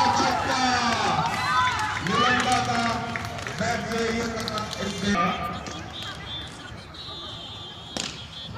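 Men's voices calling out and chatting, fading somewhat after the middle. Right at the end comes a single sharp crack of a cricket bat striking the ball.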